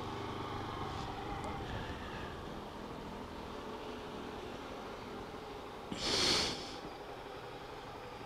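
A 150cc motorcycle's engine running low and steady as the bike rolls slowly, with a brief rushing, hissing noise about six seconds in.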